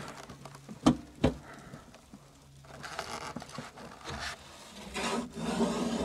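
Frost being scraped and rubbed off a car's frozen rear window in repeated rough strokes, heard from inside the car, after two sharp knocks about a second in.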